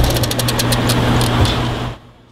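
Car engines idling: a steady low hum with fast, light ticking, fading out near the end.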